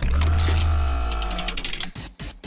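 Segment-transition sound effect: a deep bass hit under a held musical chord that fades over about a second and a half, followed by a quick run of ticks near the end.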